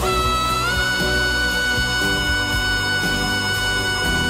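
A male singer's full-voice belt sliding up about half a second in to a very high note, an F-sharp five, and holding it steadily over orchestral backing, heard as a live concert recording.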